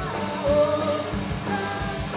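Live rock band playing: a male lead voice sings held notes over electric guitars, bass guitar and a drum kit keeping a steady beat.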